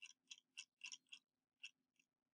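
Faint, irregular clicking of a computer mouse, about six clicks in under two seconds, over near silence.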